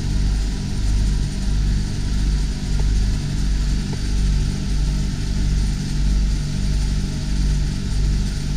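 Dometic 12,000 BTU self-contained marine air conditioner running, compressor and blower together. It gives a steady low hum that throbs about once a second, with air noise from the blower over it.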